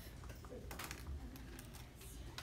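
Faint, irregular clicks and taps, like light typing, over a steady low hum.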